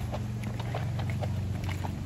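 Footsteps walking at a brisk pace on pavement, with a steady low engine hum underneath.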